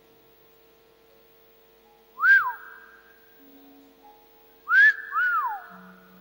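A person whistling: three short whistles that each rise and fall, the first about two seconds in and two close together near the end, over a faint steady hum.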